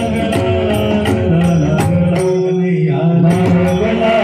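Live Marathi gavlan devotional song: a male voice holds a long note, over a steady rhythm of small hand-cymbal strikes.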